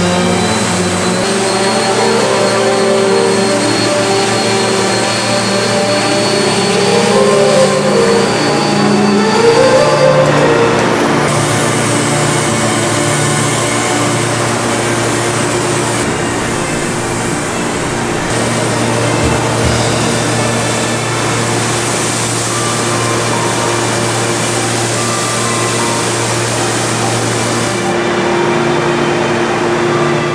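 Electric random orbital sander running on a wooden slab tabletop, its pitch wavering under load. About eleven seconds in, a hose-fed spray gun starts hissing as finish is sprayed onto the wood, and the hiss cuts off near the end.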